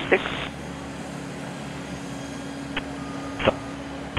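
Air traffic control radio: the last word of a controller's transmission, then the open channel's steady hiss and hum. Near the end come a faint click and a brief burst of a keyed transmission.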